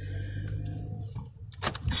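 Low, steady rumble of a vehicle heard from inside a car cabin, fading about a second and a half in.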